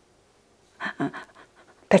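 A woman's short audible breaths: two brief breathy puffs about a second in, in a pause in her speech, which starts again at the very end.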